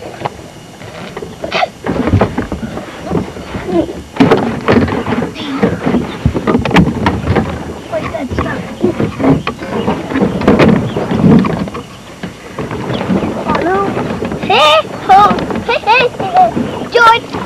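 Indistinct voices and scattered knocks, with a high-pitched child's voice rising and falling near the end.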